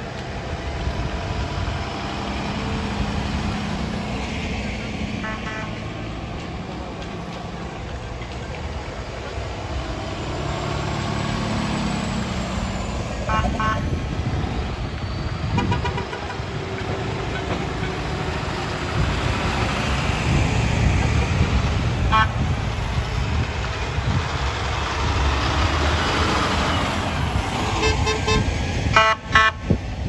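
Tow trucks and other heavy vehicles rolling slowly past with engines running, their rumble growing louder around the middle. Vehicle horns give short honks a few times, then a quick run of honks near the end.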